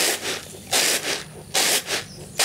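Wheat grains rustling and hissing across a woven bamboo winnowing tray as it is tossed, one burst of rustle with each toss, about three in two seconds. This is winnowing to separate the loosened bran from the wheat.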